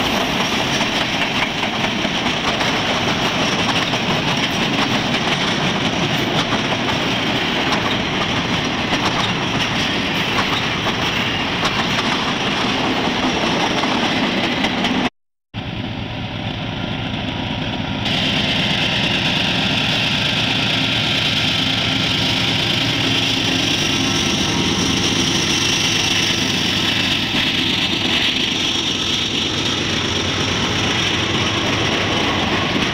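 Freight cars rolling past on the rails close by, a steady rumble of wheels on track. After a sudden cut about halfway through, a diesel-hauled freight train comes on, its locomotive engines running with a steady drone over the wheel noise as the train draws near and passes.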